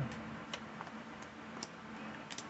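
Tarot cards being handled: a few faint, separate clicks of the cards, about two a second.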